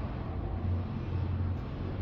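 A steady low hum under a faint even hiss, with no distinct knocks or clicks.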